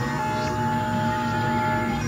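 Experimental synthesizer drone: several steady held tones layered over a low hum, with no beat.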